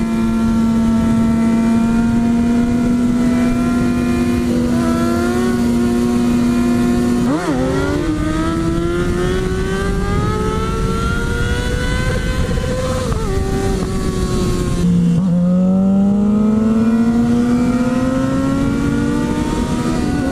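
Sport motorcycle engine at riding speed, with wind rushing past. It holds a steady note for the first seven seconds, then the revs climb steadily, drop suddenly about fifteen seconds in as a gear changes, and climb again.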